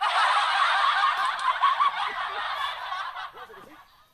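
Loud laughter that starts suddenly and fades out over about three seconds.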